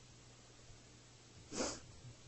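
A single short, sharp sneeze-like burst of breath from a person about one and a half seconds in, over a faint steady low hum in a quiet room.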